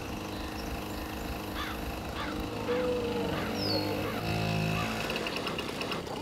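Small motor scooter engine running steadily, with birds chirping repeatedly over it. A short honk-like call, the loudest sound, comes a little after four seconds in.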